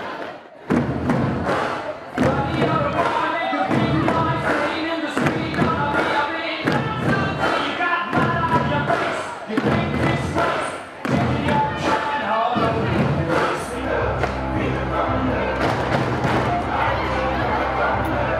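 A room full of people drumming pool noodles on plastic buckets in time with upbeat music, a rapid, steady beat of many thuds. A heavy bass line joins the music in the last few seconds.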